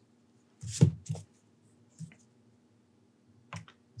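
Handling noise of a pencil and eraser being put down and picked up on a drawing board: a thump just under a second in, then two faint clicks.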